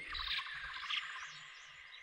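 Faint birds chirping in a dusk ambience sound effect laid under the narration, fading away toward the end.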